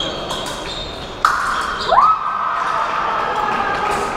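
Electric épée scoring apparatus sounding a steady tone a little over a second in as a touch lands, with a second tone sliding up to join it shortly after and both holding. Before it, fencing shoes squeak and tap on the piste.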